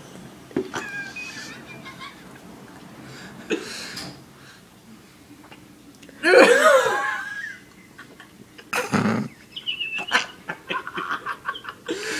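Young men laughing in bursts, the loudest about six seconds in, with a short breathy burst a few seconds later and light clicks and scrapes near the end.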